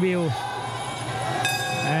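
A bell rings out suddenly about one and a half seconds in, a bright sustained ringing tone, the signal that ends the final round and the fight.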